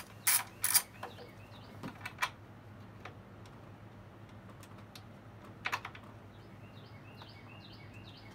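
Hand tools clicking and clinking on metal: a ratchet with swivel extension and T30 Torx bit working the upper intake bolts of a 4.0L SOHC V6. There are two sharp clicks in the first second, a few fainter ones about two seconds in, and another pair near six seconds.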